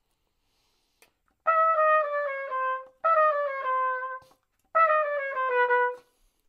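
Trumpet playing a bebop two-five-one line three times: three short phrases of quick notes, each stepping down in pitch.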